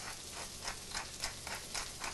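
A pepper mill being turned over the mashed potatoes: a run of small dry clicks, about five or six a second. A faint steady frying sizzle runs beneath.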